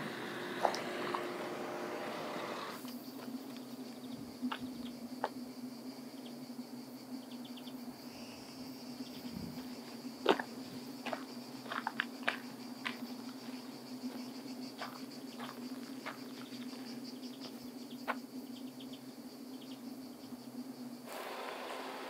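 Steady insect buzz outdoors, with scattered light clicks and crunches of footsteps on dry dirt and pine needles; the sharpest click comes about halfway through.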